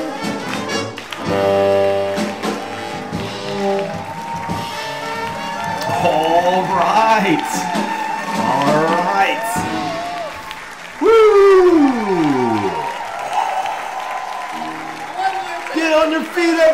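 Live swing jazz band ending a tune on a long held chord, then the audience cheering and shouting over applause, voices gliding up and down in pitch, loudest about eleven seconds in.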